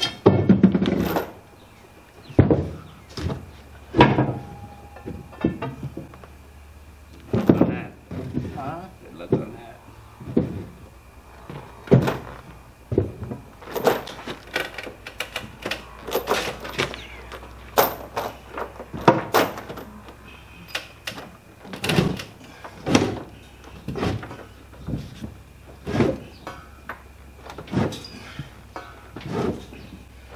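Repeated knocks and thunks of a steel pry bar and wooden blocks against a plywood trailer deck as a heavy drill press is levered into place, with indistinct voices in between.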